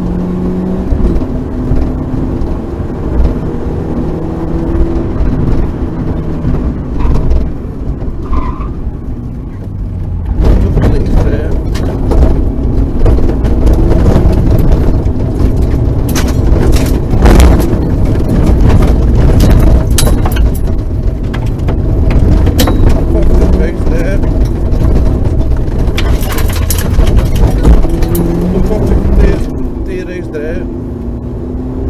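Rally car engine heard from inside the cabin, pulling through the gears on tarmac. About ten seconds in, the car runs onto gravel and the sound gets louder, with the rush of loose gravel under the tyres and many sharp clicks of stones hitting the underbody.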